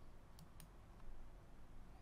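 Two faint, sharp computer-mouse clicks about a quarter second apart, under a second in, with a fainter click after them: the clicks that advance the presentation slide. Otherwise low room noise.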